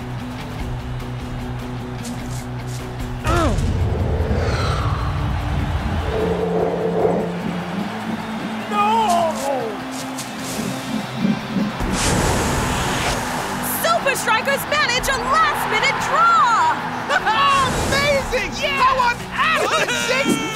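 Cartoon background score, which grows louder about three seconds in. From about twelve seconds in, a stadium crowd cheers with many whoops and shouts as a goal is scored.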